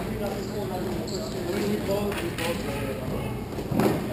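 Hockey game sounds in a large hall: players' voices calling out, with skates and sticks clattering on the playing surface and a sharp knock near the end, the loudest sound.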